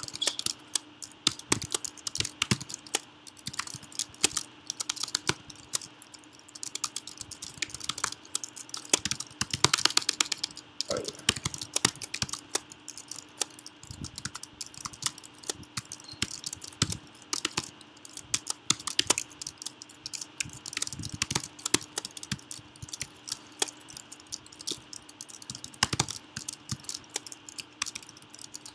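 Typing on a computer keyboard: quick, irregular keystrokes in runs with short pauses, over a faint steady hum.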